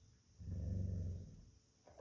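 A dog growling: one low growl lasting about a second, starting about half a second in.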